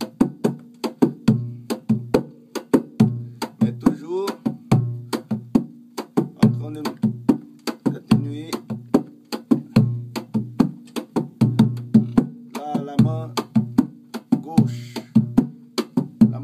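Rebolo, a large Brazilian pagode hand drum, played with the bare hands in a steady pagode base rhythm of about two to three strokes a second. Deep ringing low notes are mixed with sharper, crisper strokes, the hand left to bounce off the head rather than pressed onto it.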